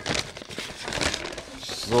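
Brown paper bag rustling and crinkling as a hand rummages inside it, a run of crisp crackles with no steady tone.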